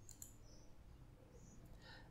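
Near silence: room tone, with a faint computer mouse click near the start.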